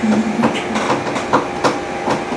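A series of light clicks, about two or three a second, over a steady background noise.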